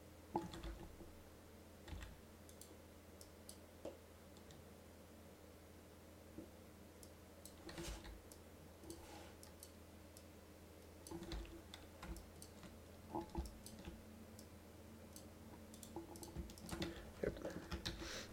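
Faint, sparse computer mouse and keyboard clicks at irregular intervals, over a low steady hum.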